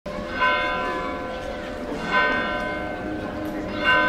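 A bell struck three times at an even pace, about 1.7 seconds apart, each strike ringing on and fading.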